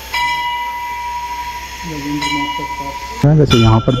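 A metal bell ringing with a long, steady tone, struck once at the start and again about two seconds later. The ring cuts off about three seconds in.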